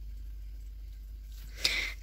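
A steady low hum with no other sound, then a short, sharp intake of breath near the end.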